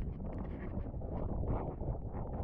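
Wind buffeting a camera microphone out on the water while wing foiling: a steady, low rumbling rush.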